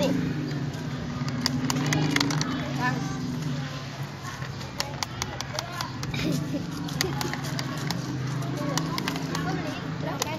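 Voices talking in the background over a steady low hum, with scattered sharp plastic clicks and knocks from a push-button boxing-robot toy as its two robots are made to punch.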